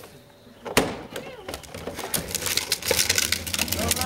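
A large plastic trash can's hinged lid slams shut with one sharp knock about a second in. A dense, rattling clatter with a low rumble follows as the can, with a person inside, is moved over pavement.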